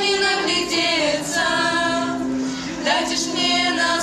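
A group of girls singing a song together into microphones, holding long notes.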